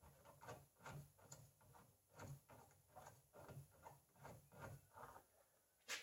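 Faint, irregular ticks and scrapes of a hand-operated rivnut tool's threaded mandrel being unscrewed from a freshly set 1/4-20 rivnut in the car body.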